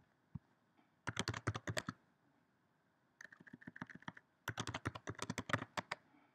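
Typing on a computer keyboard, three quick runs of keystrokes with short pauses between them, as a password is entered; a single click comes just before the first run.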